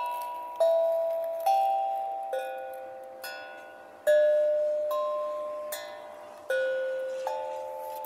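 Small steel tongue drum struck with a mallet: a slow run of single notes at changing pitches, a little more than one a second, each ringing clearly and fading away before the next.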